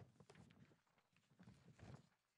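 Near silence with faint scattered rustles and light knocks of sheets of paper being shuffled close to a handheld microphone, a small cluster early and another near the end.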